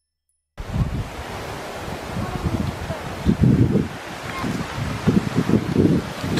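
Wind buffeting the microphone of a handheld camera: a steady hiss with irregular low rumbling gusts. It starts abruptly about half a second in.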